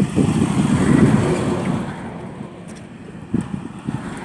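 A passing road vehicle, louder for the first two seconds and then fading away.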